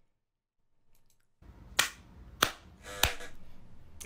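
Near silence, then three sharp clicks about two-thirds of a second apart over a faint low hum.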